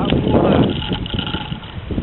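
Wind rumbling on the microphone, strongest in the first half-second and then dying away, with faint shouts from footballers on the pitch.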